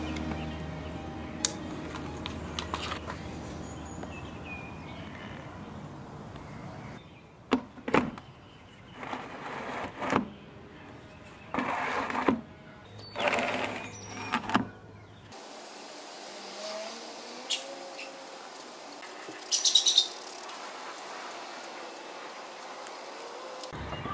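Soft background music, with a string of short scraping and knocking handling sounds in the middle and a few faint bird chirps near the end.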